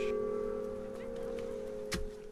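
A church bell's ring dying away, its low hum fading slowly, with a single sharp knock near the end.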